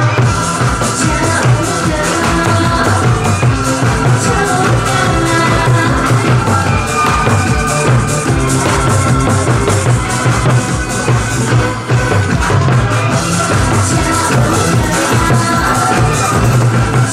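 Two Korean barrel drums struck rapidly with a pair of drumsticks, played live over a loud backing track with a steady driving beat and bass line.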